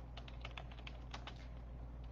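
Faint, irregular clicking of typing on a computer keyboard, over a low steady hum.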